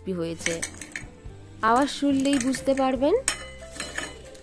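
A metal wire skimmer clinks and scrapes against a ceramic plate as fried potato bites are tipped off it, over background music.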